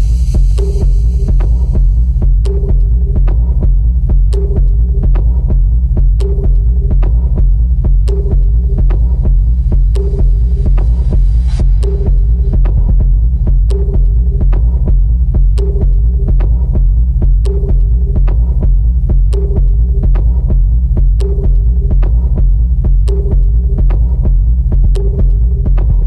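Minimal techno: a deep, pulsing bass drone with sparse, thin ticks and a short mid-pitched synth note recurring about every two seconds. A high hissing layer fades out in the first couple of seconds.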